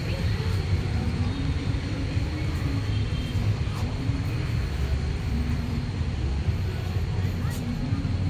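Steady low rumble of outdoor city ambience, with faint voices talking in the background.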